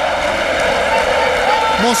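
Steady stadium crowd noise of a football match, many voices blending into a continuous din. A man's voice comes in near the end.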